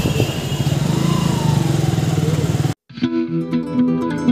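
Motorcycle engine running with street traffic noise around it; a little under three seconds in it cuts off abruptly and acoustic guitar music begins.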